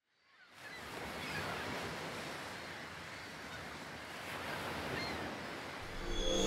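Sea surf washing in a steady wash of noise that fades in about a third of a second in and gently swells and ebbs, with a few faint high chirps over it.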